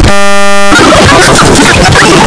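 Distorted, clipped edited audio: a loud steady buzzing tone for about two-thirds of a second, cut off abruptly by a harsh, chaotic jumble of noise.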